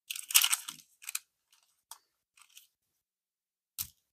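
Thin paper crinkling and rustling as it is handled and pressed flat. It is loudest in the first second, followed by a few short rustles, then a soft thump near the end.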